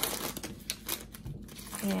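Plastic food bags and pouches crinkling and clicking as they are handled and moved about on a table, a quick run of light clicks and rustles.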